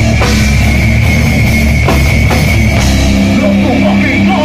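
Slam death metal band playing live: distorted guitars and bass over drums, loud throughout, with the riff changing about three seconds in.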